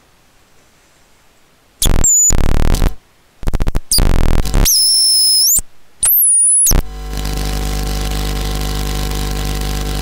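Hand-made Noiseillator electronic noise instrument played through its touch contacts and knob. After about two seconds of quiet it breaks into harsh bursts of noise cut by short gaps, with high squealing whistles that bend in pitch, then from about seven seconds settles into a steady buzzing drone with many overtones.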